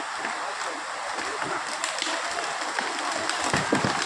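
Steady rushing of a swollen, muddy river in flood, with faint voices of people nearby.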